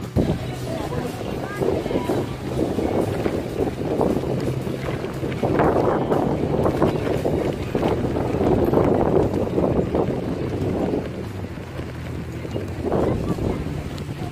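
Wind buffeting the microphone of a camera on a moving bicycle, rising and falling in gusts and loudest in the middle.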